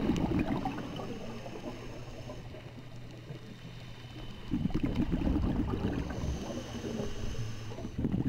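Scuba diver's exhaled bubbles gurgling out of the regulator in surges, one at the start and a longer one from about halfway on, with a quieter pause between them while the diver breathes in.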